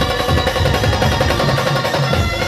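A band drum played in a fast, even roll of about ten strokes a second, over the band's held melody notes.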